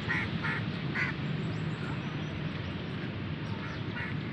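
Three short duck quacks within about the first second, over steady low background noise.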